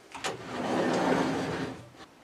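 A camper's closet door sliding along its track: a click, then a rolling rumble that swells and fades over about a second and a half.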